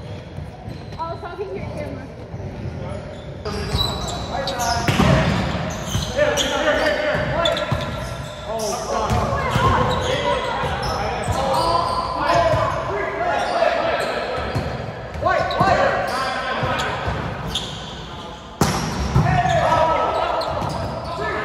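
Indoor volleyball rally in an echoing gym: the ball struck again and again by players' hands and arms, amid players' shouts and chatter.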